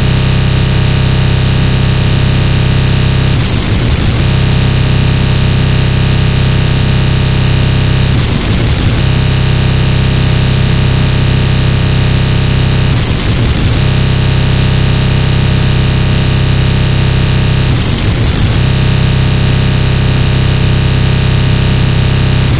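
Harsh noise music: a loud, dense wall of distorted static over a heavy low drone, with steady tones running through it. The texture loops, breaking up briefly and starting again about every five seconds.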